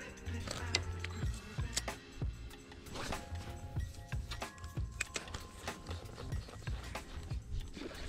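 Quiet background music: held notes that shift every second or so over a steady low bass, with faint scattered clicks.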